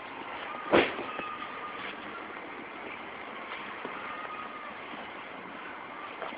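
1997 Volkswagen Jetta GT's 2.0-litre ABA four-cylinder idling steadily, heard from the rear by the exhaust tip. One sharp knock sounds about a second in.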